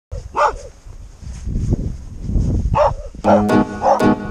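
A dog barks several times, over a low rumble. Plucked guitar music starts about three seconds in.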